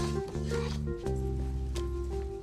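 Background score music: held chords that move to a new chord about every half second.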